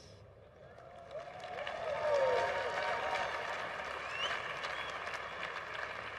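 Audience applauding in a large hall, building from about a second in and holding steady, with a few voices calling out among the clapping.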